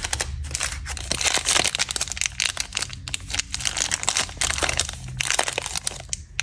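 A plastic candy-bar wrapper crinkling as it is picked up and handled, a continuous run of irregular sharp crackles.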